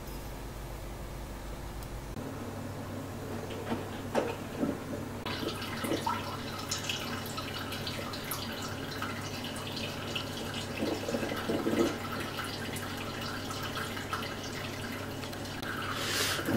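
Ninja Coffee Bar coffee maker brewing: a low hum, then from about five seconds in a steady hiss with crackles and drips as hot coffee streams into a glass mug.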